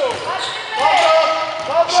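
Basketball game in a sports hall: a ball bouncing on the court, with voices calling out across the court for about a second in the middle.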